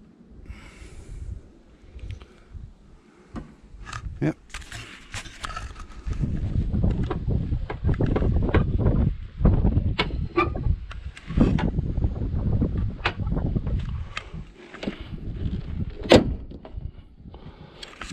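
Motorhome bonnet being shut: a few knocks and clunks, the loudest a sharp slam about two seconds before the end. A low rumble runs through the middle of the clip.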